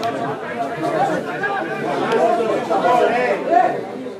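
Several people talking over one another, a steady chatter of overlapping voices.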